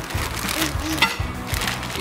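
Thin plastic bag, a reused diaper-pack bag, crinkling and rustling as it is pulled open and unwrapped, with a sharper crackle about halfway through.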